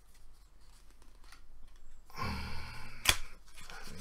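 A pack of playing cards being handled and opened by hand: faint crinkles and clicks of paper and card, a short hum about two seconds in, then one sharp click a second later, the loudest sound in the stretch.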